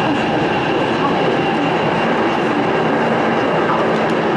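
Chongqing metro train heard from inside a crowded carriage: the steady running noise of the moving train, with a few faint high whining tones over it.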